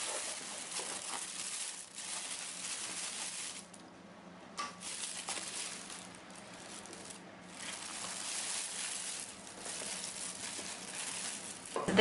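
Thin plastic carrier bag rustling and crinkling as it is handled and a meal tray is lifted out of it, with short lulls about four and seven seconds in.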